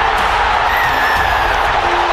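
Rugby stadium crowd cheering loudly as the winning try is scored, heard from the match broadcast, with music underneath.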